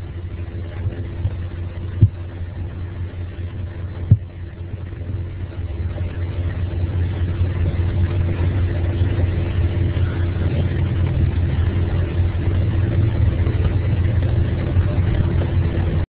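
A steady low rumble with a hum, growing slightly louder after a few seconds, with two sharp clicks about two and four seconds in; it cuts off suddenly at the end.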